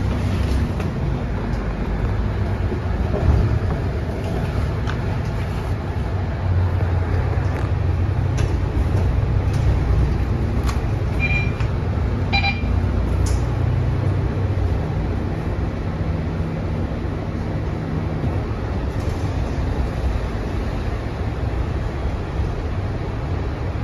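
Cabin sound of a Mercedes-Benz O530 Citaro diesel single-deck bus under way: a steady engine and drivetrain rumble with road noise and small rattles. Two short beeps, about a second apart, come about halfway through.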